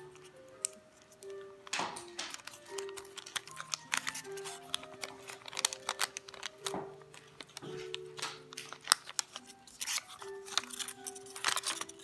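Origami paper being handled and folded by hand, with irregular crisp rustles and creasing snaps, over gentle background music with a slow melody.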